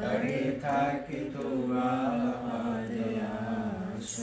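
Devotional chant sung in a held, wavering melody during a morning arati. It starts up again right at the beginning after a brief pause.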